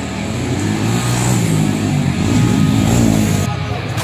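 Dirt bike engine revving, its pitch rising and falling over and over.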